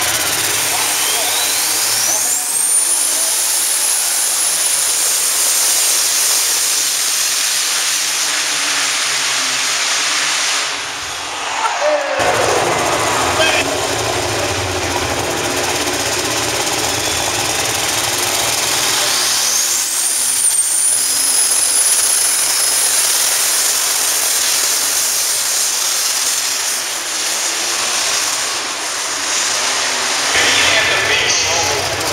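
Turbocharged diesel pulling tractors making full-power runs down the pulling track. The engine noise is topped by a turbo whine that climbs to a high scream within a couple of seconds and holds. There is a sudden break about twelve seconds in, and a second run's whine climbs the same way about twenty seconds in.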